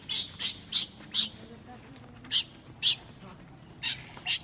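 A series of short, high-pitched animal chirps, about seven sharp calls spaced irregularly over four seconds, with a gap in the middle.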